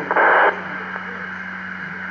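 FM scanner speaker on a two-metre ham repeater: a short loud burst of static just after a transmission ends, then the open carrier with a steady low hum and faint hiss and no one talking.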